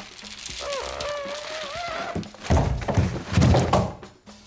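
Film sound effect of a head and body sliding down cabinet glass: a wavering, squealing screech of skin dragging on glass, exaggerated for effect. It is followed by a run of heavy thumps near the end.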